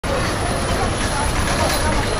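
Busy street traffic: bus engines running amid a steady rumble of traffic, with a crowd's chatter in the background.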